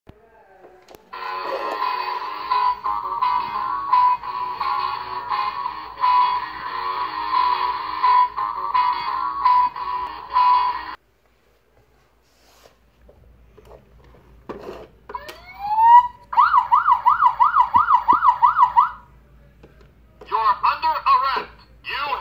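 Toy police car's electronic sound effects playing through its small, tinny speaker: a long stretch of electronic tune, then after a pause a siren that winds up in pitch and warbles fast, about four times a second. A recorded voice phrase starts near the end.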